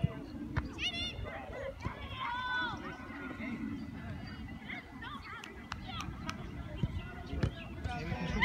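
Distant high-pitched shouts and calls of children across a soccer field, one about a second in and an arching one at about two and a half seconds, with smaller calls later, over a steady low rumble.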